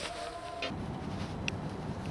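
A faint steady tone that breaks off under a second in, giving way to outdoor street background noise: a low steady rumble with a single short click about a second and a half in.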